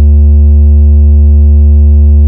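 A single loud, low synth bass note held steady at one pitch with no rhythm or other instruments.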